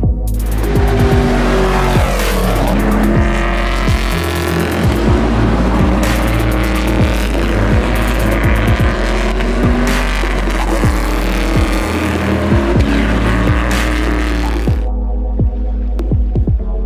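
Stock Light race cars at high revs on track, their engine pitch sweeping as they pass, layered over electronic music with a heavy bass and steady beat. The car noise stops about a second before the end, leaving the music alone.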